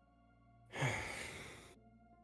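A person's long sigh into the microphone: one breathy exhale a little before the middle, strongest at its start and fading out over about a second, over soft steady background music.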